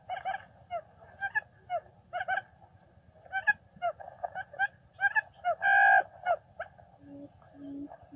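Birds calling in many short, quick chirps, with one louder, drawn-out call about three-quarters of the way through. Near the end a low hoot starts repeating about twice a second.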